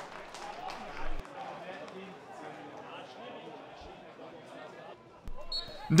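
Faint live sound from a football pitch: distant players' calls and a dull thud of the ball being struck about a second in, with another knock and a brief high tone near the end.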